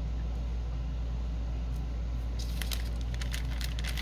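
A steady low hum runs throughout. About halfway in, a run of light crackles starts as a strip of alcohol-ink-coloured clear plastic tape is handled and flexed.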